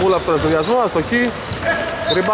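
A man's voice calling out with wide swings in pitch over a basketball game, with a basketball thudding on the hardwood court in a large, echoing gym.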